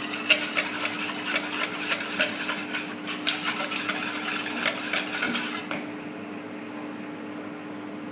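Stainless wire balloon whisk beating a runny mixture in a plastic mixing bowl: a fast, irregular run of clicks and taps from the wires striking the bowl, stopping about six seconds in. A steady low hum runs underneath.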